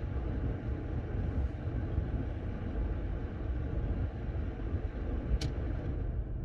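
Car air conditioning blowing steadily right next to the microphone: a dull, even rush of air that masks everything else. There is one short click about five and a half seconds in.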